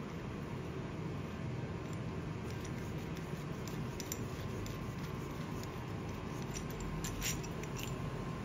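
Faint, scattered clicks and taps of a stainless-steel puller tool being handled and its bolted parts separated, over a steady low room hum.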